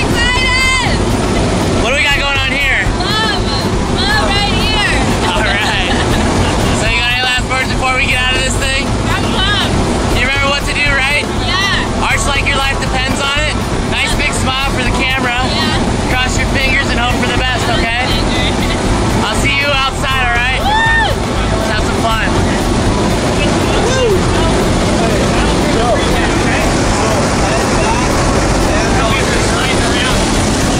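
Loud, steady engine and slipstream noise inside a skydiving jump plane's cabin during the climb, with voices rising and falling over it.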